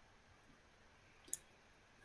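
A single short, sharp click a little over a second in, over near silence.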